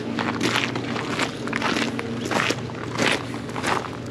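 Footsteps crunching on gravel, about two steps a second, with a faint steady low hum underneath.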